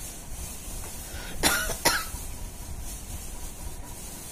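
A person coughing twice in quick succession, about a second and a half in, over a faint steady hiss.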